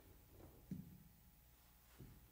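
Near silence: room tone with a faint low hum, and one soft knock about two-thirds of a second in as a handheld microphone is set down on the grand piano.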